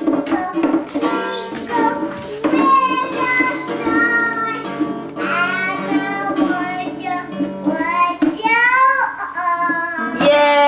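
A toddler singing in short, high, sliding phrases while plucking and strumming the strings of a small acoustic guitar, whose notes ring on underneath.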